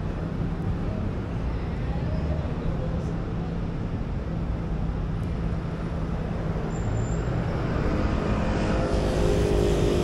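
City road traffic: a steady low rumble of passing cars. Near the end it grows louder as a motor vehicle approaches, and its engine note rises out of the noise.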